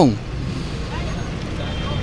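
Steady outdoor background noise, a low rumble and hiss like distant street traffic, after a man's voice trails off at the very start.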